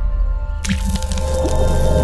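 Channel logo intro sting: music with a low drone and several steady held tones, joined about two-thirds of a second in by a hissing sound effect that runs on.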